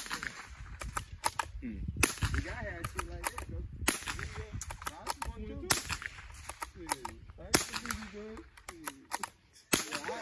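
A bolt-action gun fired six times, roughly two seconds apart, the first shot the loudest, with lighter clicks between shots as the bolt is worked. Faint voices underneath.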